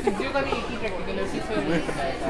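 Chatter of many students talking at once in a large lecture hall, with voices overlapping.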